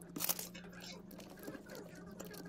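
Faint handling noise of hands and small tools on a phone being reassembled: a brief scraping rustle at the start, then soft scattered clicks and rubs as a screwdriver is swapped for tweezers. A faint steady low hum lies under it.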